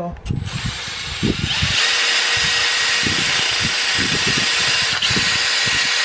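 Cordless drill spinning a bit wrapped in 150-grit sandpaper inside a plastic rigging fitting, sanding out its fiberglass collar to enlarge the half-inch bore so the pin fits. It runs lighter at first, then steady at full speed from about a second and a half in.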